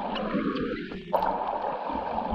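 Muffled underwater sound of a swimming pool picked up by a submerged camera: a dense low rush with scattered faint clicks and gurgling, and one sharp knock just after a second in.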